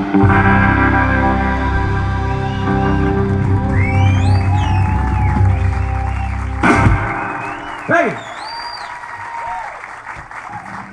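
A live rock band with electric guitar, bass, organ and drums holds the closing chord of a song and ends it on a final hit about two-thirds of the way in. Audience whistles and scattered applause and cheering follow.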